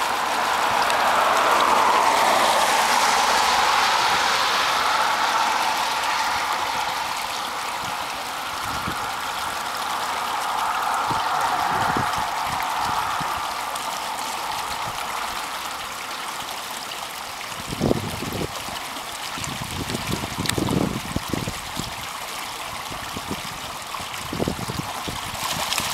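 Small shallow creek flowing: a steady rushing babble of water. A few soft low thumps come in the last several seconds.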